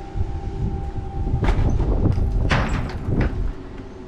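Wind buffeting the microphone in a low rumble, with two short scraping noises about a second and a half and two and a half seconds in.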